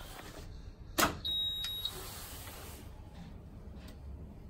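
A school bus's ignition key switch is turned to the on position with one sharp click about a second in. A short high-pitched electronic beep follows it, lasting under a second.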